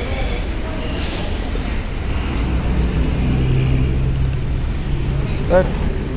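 Low rumble of road traffic with buses on the road, a brief hiss about a second in, and a steady engine hum from about three to five seconds in.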